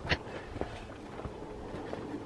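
Faint footsteps on dry dirt, a few soft steps about half a second apart over a steady low outdoor hiss.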